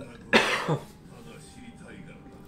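A man coughing into his raised arm: a sudden loud burst about a third of a second in, with a second, smaller cough just after.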